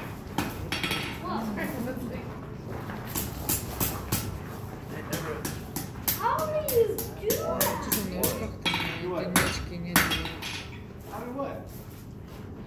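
A blacksmith's hammer striking hot steel on an anvil: a run of sharp metallic strikes, about two to three a second, that stop near the end.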